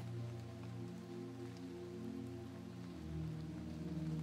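Soft ambient sleep music made of slow, sustained low tones, laid with 528 Hz binaural beats. A new, deeper tone comes in about three seconds in.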